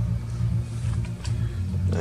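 Steady low hum of running machinery, with faint splashes of water being poured from a plastic bottle onto a glass sheet.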